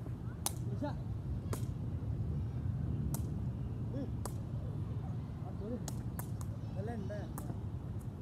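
A woven cane ball being kicked back and forth in play: about seven sharp knocks spaced irregularly, with faint voices calling between them over a steady low background rumble.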